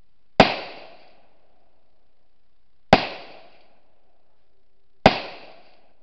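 Three rifle shots, slow and deliberately paced about two to two and a half seconds apart, each followed by a short echo.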